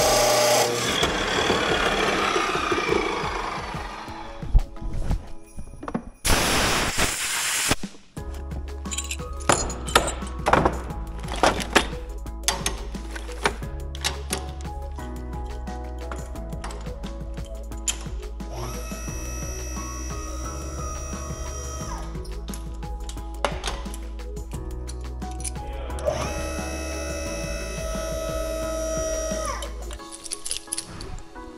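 Abrasive chop saw cutting through a hydraulic hose, its cut-off wheel then spinning down with a falling whine over about three seconds. From about eight seconds in, background music with a steady beat takes over.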